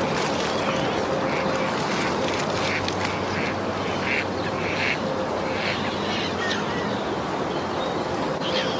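Short, irregular bird calls over a steady outdoor background noise.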